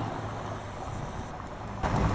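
Motor vehicle engine running: a steady low hum with faint background street noise, rising slightly near the end.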